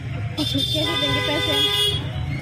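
A vehicle horn sounds as one steady held note for about a second and a half, starting abruptly about half a second in, over the low rumble of a moving vehicle heard from inside its cabin.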